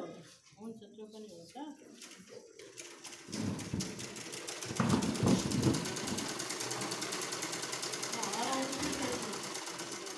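Sewing machine stitching steadily in a fast, even rhythm, starting about three seconds in. Faint voices before it.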